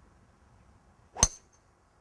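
A golf driver striking the ball once, about a second in: a single sharp ping with a brief high ring.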